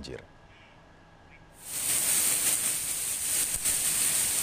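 Heavy rain pouring down onto a flooded street: a steady hiss that starts suddenly about a second and a half in, with a few sharp ticks of drops.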